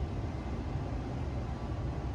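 Steady low rumble of room background noise, with no distinct events.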